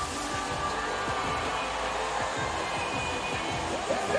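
Stage CO2 cryo jets blasting, a steady rushing hiss set off right at the start, with music playing underneath.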